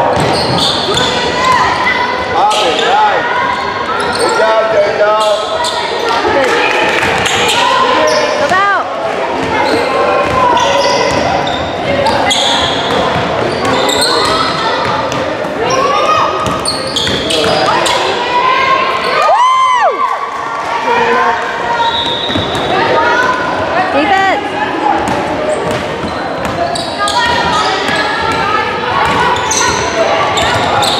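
Live basketball game sounds echoing in a gym: a ball dribbling, sneakers squeaking on the hardwood court, and players' and onlookers' voices, with one longer, louder squeak about two-thirds of the way through.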